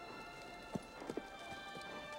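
A horse's hooves knocking a few times on turf, under quiet sustained orchestral film-score music.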